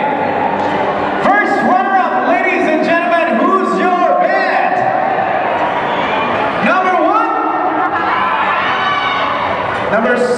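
Mostly speech: a man talking over a loudspeaker system.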